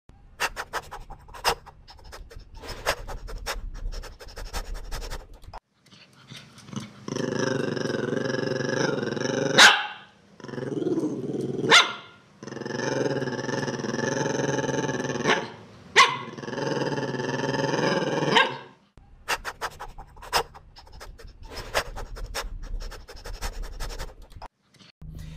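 Small dog's sounds: quick panting ticks, then several long drawn-out dog vocal sounds broken by three sharp clicks, then quick panting ticks again.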